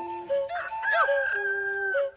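A rooster crowing over background music: one crow starting about half a second in and held for over a second.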